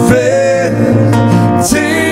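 Acoustic guitar strummed and picked, with a man singing over it: one sung phrase near the start and another near the end.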